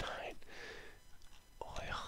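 A man whispering under his breath, breathy and quiet with no clear words.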